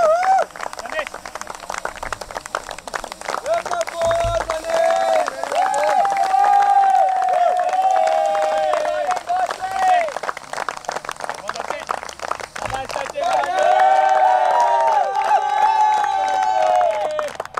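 A small group of people clapping, with many overlapping voices talking and calling out over it.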